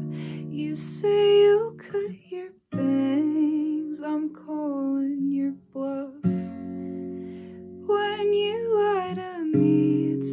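Acoustic guitar strummed through a chord progression, with a new chord every second or two.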